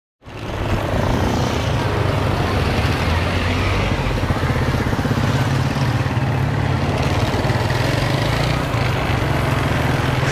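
Small motor scooter engine running steadily while riding along a road, with road and wind noise over it.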